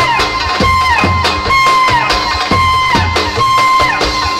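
Live Roma wedding dance music led by a clarinet, playing long held notes that slide downward at the ends of phrases, over a steady drum beat.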